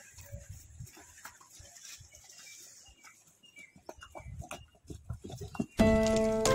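Water buffalo hooves thudding irregularly on sand and concrete as the animals walk out, with a few short high chirps in between. Background music starts suddenly near the end.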